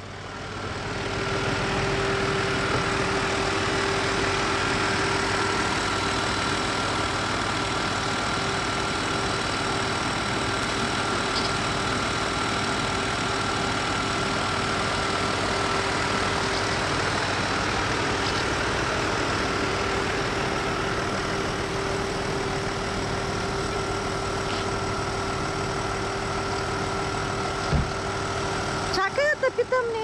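Car engine idling steadily, a constant hum with a faint steady whine, coming up over the first second or so. A single click near the end, then a voice just before the end.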